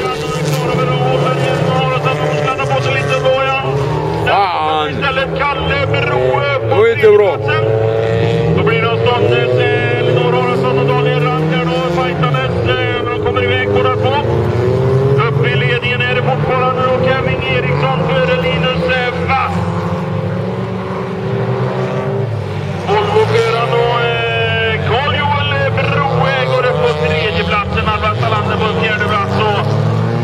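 Several race cars on a dirt track with their engines revving hard, the pitch climbing and dropping again and again as the cars accelerate and lift, loudest about seven seconds in.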